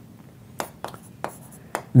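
Several light, sharp taps or clicks at uneven intervals in a small room, of the kind made by a pen or marker writing or tapping.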